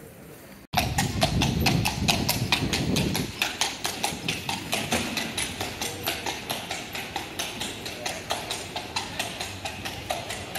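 Horse's hooves clip-clopping on cobblestones as a horse-drawn carriage goes along the street: a quick, even beat of hoof strikes, about four or five a second. It starts suddenly about a second in and slowly fades as the carriage moves off.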